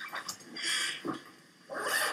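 Sound from a short video clip played over loudspeakers to a room: three separate noisy bursts, the loudest near the end.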